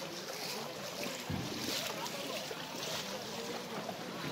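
Several people wading through shallow floodwater, their feet splashing in repeated swells of sloshing water.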